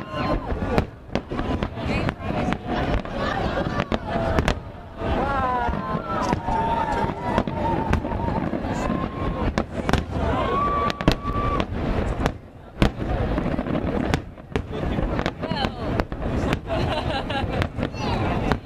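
Aerial fireworks shells bursting in rapid succession, a steady run of sharp bangs and crackle that eases off briefly twice.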